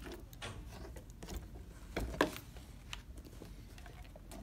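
Small, scattered clicks and rustles as metal ring-snap parts and a nylon webbing strap are handled and fitted onto the die of a hand snap press. There are about half a dozen light knocks, with the sharpest about two seconds in.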